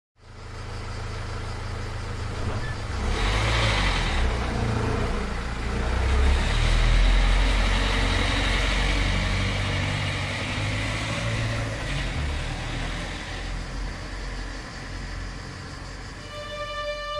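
A small hatchback car's engine running as the car pulls away and drives off. The engine and road noise build over the first several seconds, then fade as the car gets farther away.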